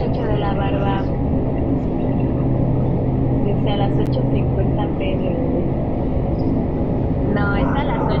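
A woman's voice in a few short snatches over a steady low hum and rumble.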